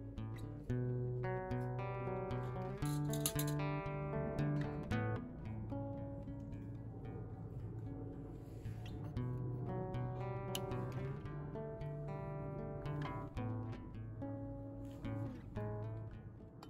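Background music: an acoustic guitar playing plucked and strummed chords.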